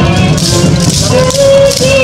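Yosakoi dance music playing loud, a held melody over a steady beat, with the wooden clack-rattle of naruko clappers about twice a second.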